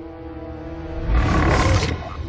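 A soft held music chord, then about a second in a loud, rough roar from a film soundtrack lasting most of a second before cutting off.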